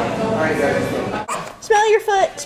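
A toddler crying, short whiny wails that bend in pitch, starting near the end after a break in the sound.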